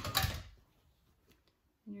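A short knock and rustle from handling at the ironing board near the start: the iron being set down and the cotton fabric strip being moved and folded. Then a quiet room.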